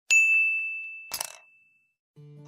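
A single bright metallic ding: one sharp strike that rings on one clear high note and fades away over about a second and a half. A short rattling clatter comes about a second in.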